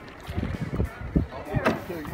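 Indistinct voices of people talking, over an uneven low rumbling noise.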